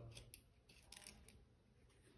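Faint small clicks and scrapes of a precision screwdriver tip working the tiny screws of a phone's plastic midframe, in two short clusters about a second apart.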